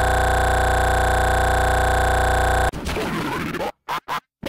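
An edited, electronically stretched voice holding an 'L' sound frozen into a steady, unchanging drone with many overtones for nearly three seconds. It cuts off abruptly into a jumbled, garbled stretch, then short bursts broken by silent gaps near the end.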